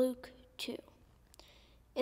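A girl's quiet voice: a short syllable at the start and another about two-thirds of a second in, then a soft breath just before she reads aloud.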